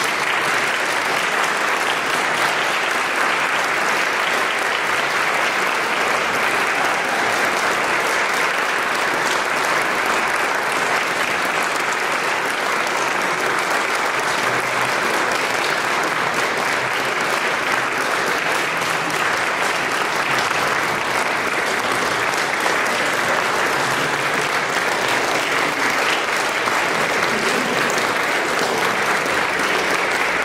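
Audience applauding, a steady, sustained ovation.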